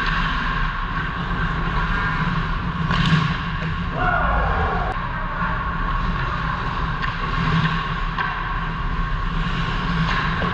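Ice hockey rink ambience during play: a steady rush of arena noise with distant voices. There is a sharp knock about three seconds in and a falling, sliding sound about four seconds in.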